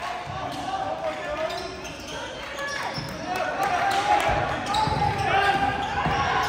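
A basketball dribbled on a hardwood gym floor, with short low thumps mostly in the second half, under steady talk and calls from spectators and players in a gymnasium.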